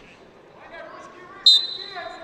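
A single sharp, high-pitched signal tone starts suddenly about one and a half seconds in and dies away over about half a second, over voices in a large hall.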